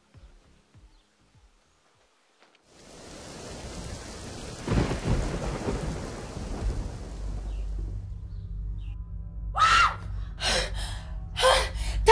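Near silence, then a rainstorm hiss fades in about three seconds in, with a rumble of thunder from about five seconds that dies away by eight seconds, leaving a low hum. Near the end a woman's voice makes several short strained sounds.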